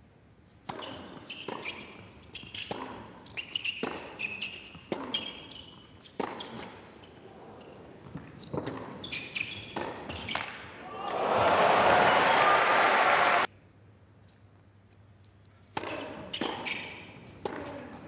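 Tennis rally on an indoor hard court: repeated racket strikes on the ball and ball bounces, with shoe squeaks. About eleven seconds in, a loud burst of crowd cheering and applause cuts off suddenly, and a few more shots follow near the end.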